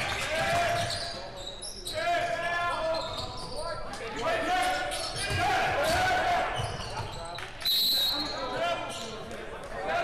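Basketball game play on a hardwood gym court: the ball bouncing and sneakers squeaking in a large echoing hall. Nearly eight seconds in, one short, loud referee's whistle blast stops play.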